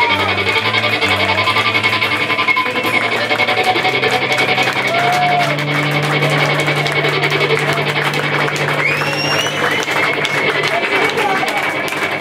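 Live rock band playing the close of a song: electric guitar, electric bass and drum kit with cymbal wash. A long held low bass note stops about eleven seconds in.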